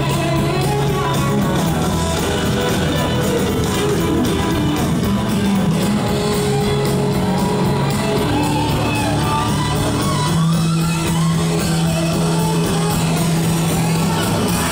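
Live blues-rock band playing loudly, recorded from the audience: electric guitars playing lead lines over bass and drums.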